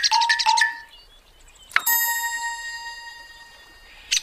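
A quick run of rapid pecking taps mixed with short chirpy tones, then, a little under two seconds in, a single bright bell-like ding that rings on and fades away: cartoon sound effects for the woodpecker marking the pole.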